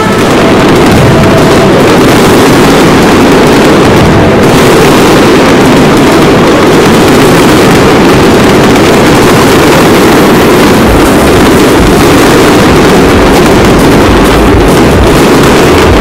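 A fireworks display going off continuously: dense bangs and crackle run together into one steady, loud noise with no gaps between shots.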